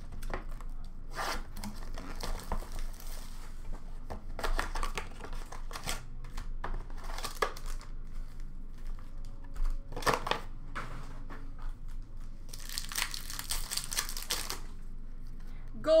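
Trading-card packs and a cardboard blaster box being handled, with scattered short clicks and rustles. About three-quarters of the way in come roughly two seconds of crinkling and tearing as a foil card pack is ripped open.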